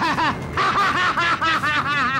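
A man laughing: a long run of rapid, evenly spaced 'ha' bursts.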